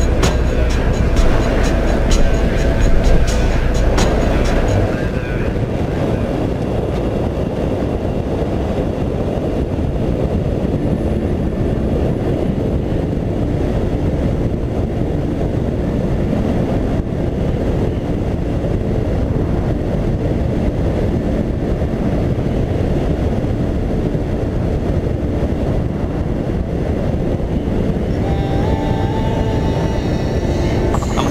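Kymco Quannon 125 motorcycle running at a steady cruising speed, mostly buried under wind rushing over the camera microphone. Music plays over the first few seconds and comes back near the end.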